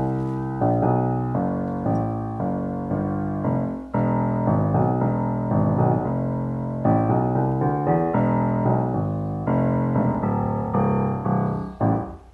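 A 1962 Yamaha G2 grand piano played in the bass register: a run of low chords, with a short break about four seconds in, sounding very snappy. The action has just been regulated and the hammers voiced.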